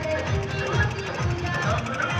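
DJ remix music played loud through a pickup-mounted sound system, with a heavy bass beat repeating about three times a second under a melody.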